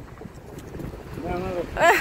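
Wind buffeting the microphone with a steady low rumble. A voice calls out during the second half.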